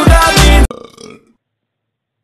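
Loud music with low, downward-gliding sounds, cutting off suddenly about two-thirds of a second in and leaving silence.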